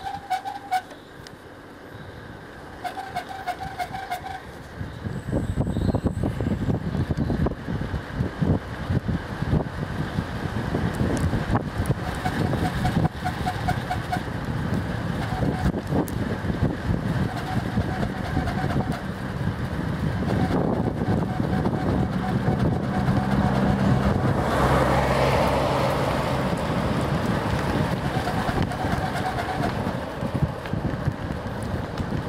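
Wind buffeting the microphone of a camera on a moving bicycle, with a low rumble of tyres on asphalt; it grows much stronger about five seconds in as the bike picks up speed. A short buzzing tone comes and goes every few seconds.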